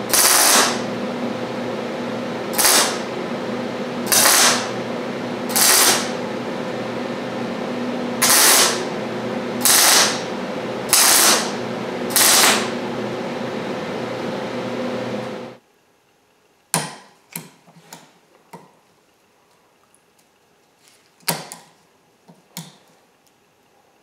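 An electric welder humming steadily, with eight short bursts of arc welding, each under a second: tack welds joining a steel piece to a pair of snap ring pliers. The hum cuts off suddenly about two-thirds of the way through, and a few light clicks and taps follow.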